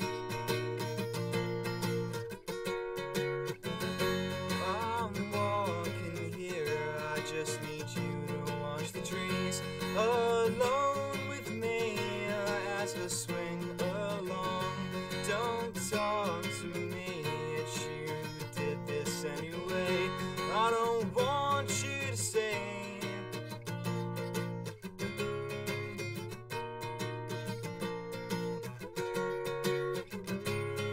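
Acoustic guitar strummed and picked, with a young man singing over it from about four seconds in; the singing drops out near the end while the guitar carries on.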